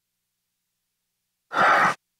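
A man's single short, breathy sigh about one and a half seconds in, against otherwise dead silence.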